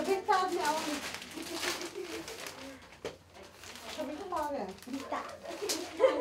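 People talking in a small room, voices near the start and again after about four seconds, with a quieter lull around the middle.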